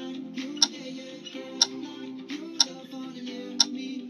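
A workout app's countdown timer ticking sharply once a second, over background music with guitar.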